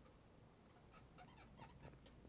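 White plastic squeeze bottle of liquid craft glue squeezed onto a paper flower, giving several faint, short squelchy squeaks in the second half: a 'squibby, squib' sound.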